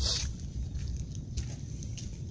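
Footsteps and camera handling on a wet outdoor path over a steady low rumble, with a short burst of noise at the start and a faint steady high-pitched tone throughout.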